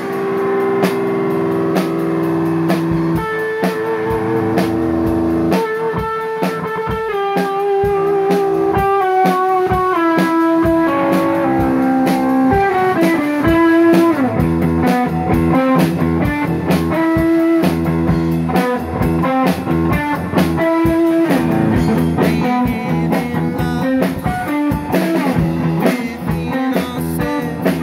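Live rock playing: a guitar plays a lead line of held, stepping notes over a drum kit's steady beat with cymbal crashes.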